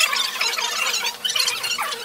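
Children's high-pitched squeals and voices overlapping in a crowded room.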